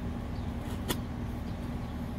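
Steady low rumble with a faint hum under it, and one sharp click about a second in as a knife works at the packing tape of a cardboard parcel.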